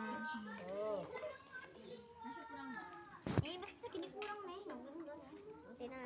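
Children's voices chattering and calling out, with a single sharp clack about three seconds in and a few lighter clicks after it.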